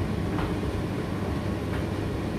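Indesit IDC8T3 8 kg condenser tumble dryer running mid-cycle: a steady low rumble from the turning drum and motor, with a faint knock twice.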